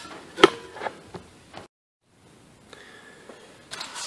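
A few light knocks and clicks from handling the door parts, the loudest a sharp knock about half a second in, with a brief dead-silent gap partway through.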